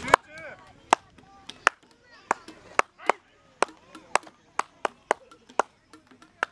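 Spectators clapping out a cheering beat close by: single sharp claps about twice a second, with faint shouts of encouragement between them.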